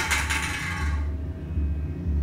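A low, pulsing rumble, with a hiss that swells across the upper range and fades out about a second in.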